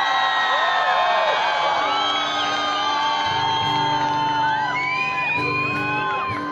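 A live band playing through the PA while the audience whoops and cheers, with many voices sliding up and down in pitch over held notes.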